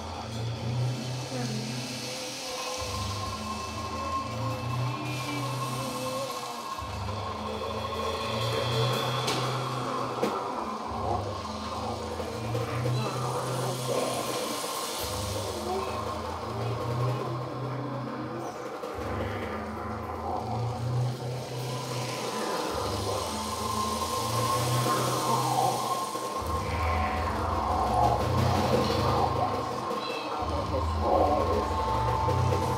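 Live psychedelic noise-rock band playing, built on a low riff that repeats about every four seconds, with a held high tone and dense noisy effects above it.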